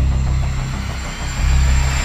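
Trailer sound design: a deep rumbling bass drone under a swelling hiss that builds in intensity, with a short dip in the bass about a second in.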